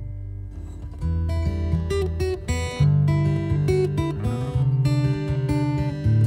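Acoustic guitar playing an instrumental break in a folk song. A held chord rings out and fades, then picked and strummed chords with moving bass notes start about a second in.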